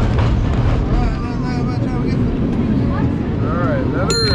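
San Francisco cable car rolling along its rails, a steady low rumble, with passengers' voices faintly in the background.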